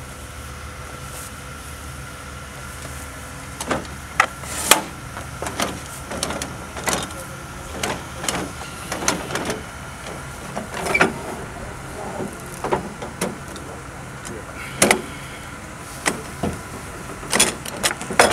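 Irregular metallic clicks and clanks of a casket lowering device's frame and straps being worked, starting about three and a half seconds in, over a steady low motor hum.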